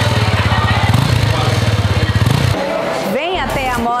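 Honda XRE 300 Sahara's single-cylinder engine running with a rapid, even exhaust beat, which cuts off about two and a half seconds in. A voice follows near the end.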